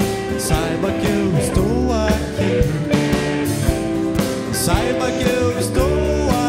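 Live band playing an acoustic pop-rock song: a man sings lead over strummed acoustic guitar, keyboard, electric guitar, bass and a steady drum beat.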